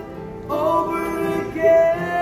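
Male voice singing a slow song over two strummed acoustic guitars. It swells into a loud held note a little before the end.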